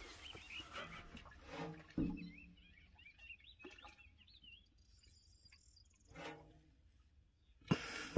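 Faint outdoor ambience with a small bird chirping in quick wavering phrases, joined by a few brief low sounds and a short louder burst near the end.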